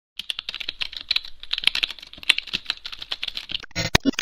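Rapid computer-keyboard typing clicks used as the sound effect for a channel logo intro, ending in a louder, fuller sound near the end.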